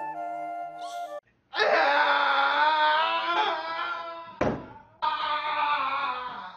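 Soft soundtrack music that stops about a second in, followed by a person wailing loudly in grief. The wailing is broken by a single thump about four seconds in, then starts again.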